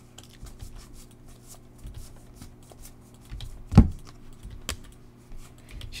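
A stack of baseball trading cards being flipped through by hand: a string of light clicks and slides as each card is pushed off the stack, with one louder thump a little before four seconds in, over a faint steady hum.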